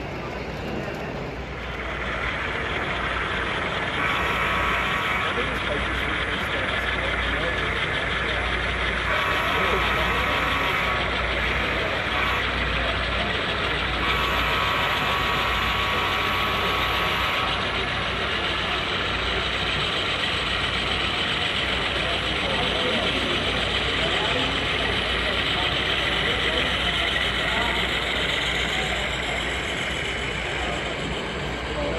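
Horn of a sound-equipped HO-scale model diesel locomotive blowing three long blasts, each longer than the last, over the steady din of a busy exhibition hall.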